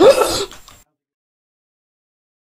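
A man's short, loud scream straight at the microphone. It starts suddenly, rises in pitch and cuts off after about half a second.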